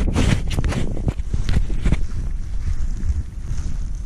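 Wind buffeting the microphone, with several sharp thuds in the first two seconds as a spade digs into the soil.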